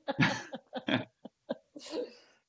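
Laughter in short, breathy bursts, about half a dozen of them, with brief gaps between.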